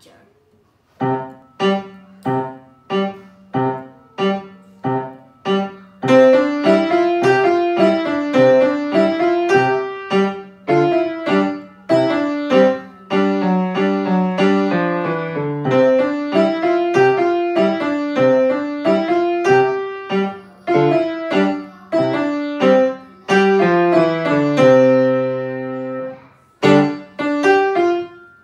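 Yamaha grand piano played by a child: a short beginner's piece in C major. It opens with about eight detached, evenly spaced notes, then moves into a running melody over a bass line. Near the end comes a long held chord, followed by two short closing chords.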